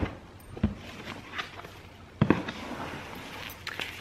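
Handling of a cardboard gift box being opened: a few soft knocks and a louder thump a little past two seconds in, with faint rustling of paper.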